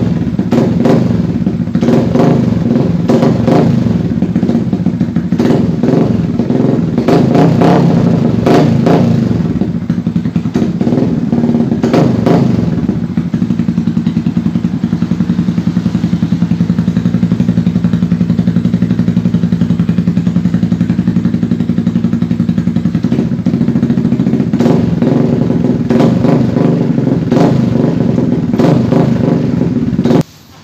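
Yamaha Vixion 150 cc single-cylinder four-stroke engine running through a short Proliner aftermarket silencer, loud and harsh on the ears. It idles with repeated quick throttle blips through the first dozen seconds, settles to a steady idle for about ten seconds, then is blipped again several times near the end.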